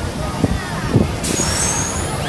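Drop tower ride's pneumatics letting out a sudden hiss of air about a second and a quarter in, over steady background noise with a couple of low thumps before it.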